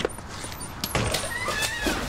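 Scuffle as a man forces a boy through a shop door: a few knocks as the door is pushed open, then a short high-pitched gliding sound in the second half.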